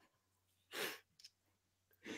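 A single short breath out, like a sigh, close to a microphone, about three quarters of a second in, in an otherwise near-silent pause.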